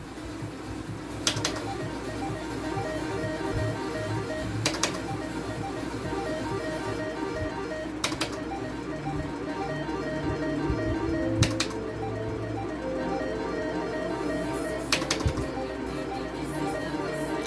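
Electronic slot-machine game music playing steadily, with a sharp click-like sound about every three and a half seconds, five in all, each marking the start of a new spin of the reels.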